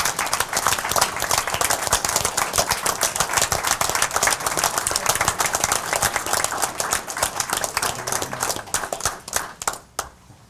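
Audience applauding, many people clapping at once; the clapping thins out and stops near the end.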